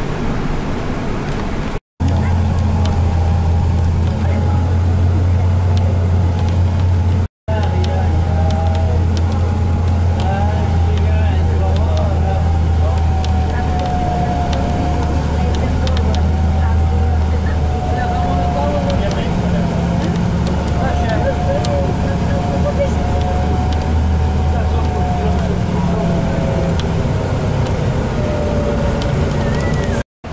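Bus engine and drivetrain heard from inside the cabin while driving: a steady low drone with a thinner whine above it that drifts slowly in pitch. The low drone eases a few seconds before the end, and the sound cuts out to silence twice, briefly, in the first eight seconds.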